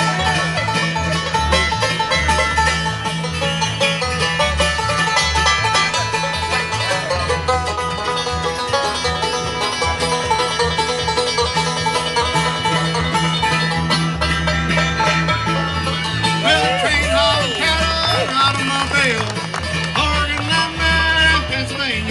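Live bluegrass band playing an instrumental break: banjo rolls over acoustic guitar and a steady upright bass pulse, with sliding lead notes in the second half.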